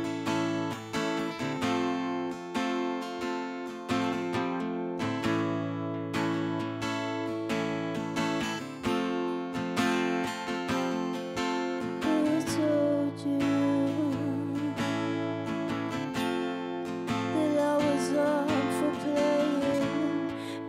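Acoustic guitar, capoed, picking a slow intro of single ringing notes and chords. About twelve seconds in, a woman's singing voice comes in over the guitar.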